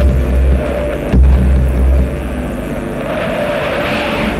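Processed electronic sound from piezo sensors under a metal plate, driven by a performer's movements on the soil. It comes as two heavy, deep bass rumbles in the first two seconds, then a hissing swell that builds toward the end.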